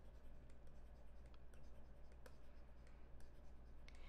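Faint scratchy strokes and light ticks of a stylus scribbling on a tablet, shading in one box after another, over a low steady hum.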